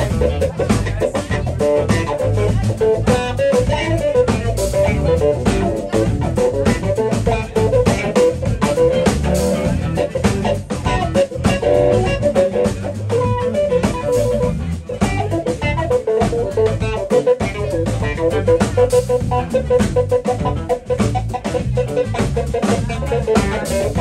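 Live blues band jamming: electric guitar, bass guitar and drum kit playing together with a keyboard, a busy line of notes running over a steady groove.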